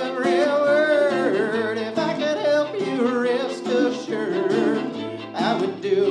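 Live acoustic Americana music: fiddle, mandolin and acoustic guitar playing together, the fiddle carrying a wavering melody over the picked strings.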